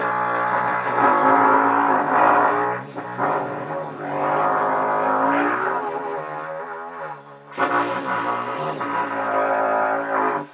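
Trumpet sounding long, low pedal tones with a buzzy, overtone-rich sound. The notes are held with brief breaks, and the pitch wavers and slides a little in the middle before a fresh loud note starts near the end.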